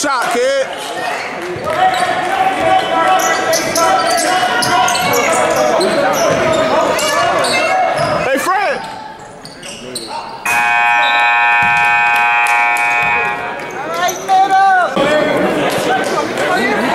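Gymnasium scoreboard buzzer sounding one steady blast of about three seconds, starting about ten seconds in, signalling a stop in play. Before and after it come crowd voices and a few short sneaker squeaks on the hardwood court.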